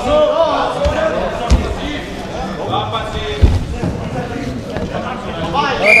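Men's voices shouting "vamos" at wrestlers, echoing in a large hall, with two dull thumps as the wrestlers grapple on the mat. A shrill referee's whistle starts at the very end, stopping the bout.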